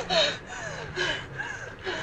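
A man gasping for breath in three or four short, ragged gasps, each falling in pitch, as he struggles for air after nearly drowning.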